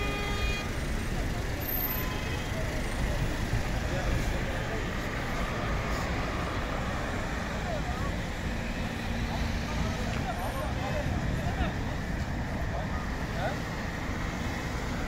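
Roadside traffic noise: vehicle engines running and cars passing, with a crowd's voices faintly in the background.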